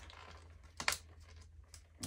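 A small clear plastic accessory bag being handled and worked open by hand: a few light clicks, with one sharp click a little under a second in.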